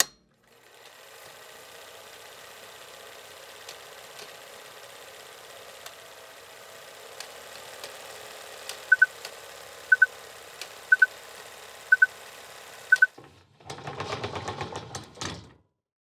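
Film-projector sound effect under a countdown leader: a steady whirr with film crackle and faint clicks. Five short beeps come one a second in the second half, then a louder clattering burst lasts about two seconds and cuts off.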